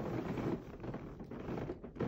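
Bedsheets and mattress rustling as a patient is rolled over in a hospital bed.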